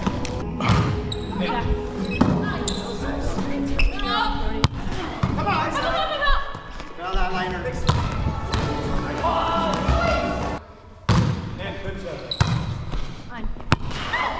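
Indoor volleyball play in a large, echoing gym: the ball is struck and hits the floor in several sharp knocks, under players' voices and chatter.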